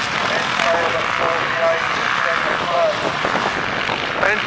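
Several motocross bikes racing past, their engines revving with the pitch climbing and dropping.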